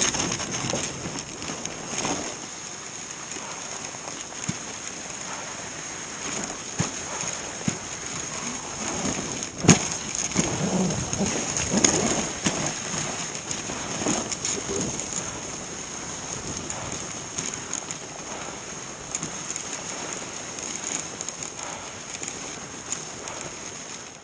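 Dog sled running over packed snow behind a team of Alaskan huskies: a steady hiss from the runners with a patter of paws and small knocks from the sled, and one sharp click about ten seconds in.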